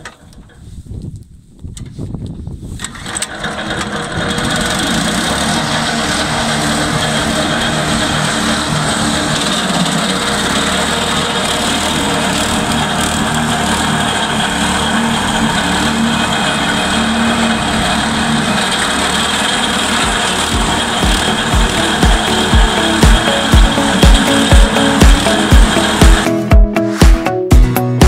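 The small petrol engine that drives the cutting unit of an ARPAL AM-80BD-M tracked branch chipper is pull-started and catches after about three seconds. It then runs loud and steady while branches are chipped. Dance music with a thumping beat of about two beats a second comes in about twenty seconds in.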